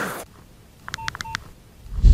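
Short electronic beep sound effect: a quick run of about five touch-tone-like beeps lasting about half a second, starting about a second in.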